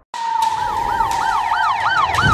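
Police siren starting abruptly and yelping in a fast rise and fall about four times a second, over a steady tone that slowly sinks in pitch.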